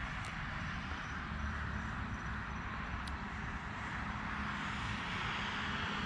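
Steady outdoor background noise: a low rumble under an even hiss, with two faint clicks, one just after the start and one about three seconds in.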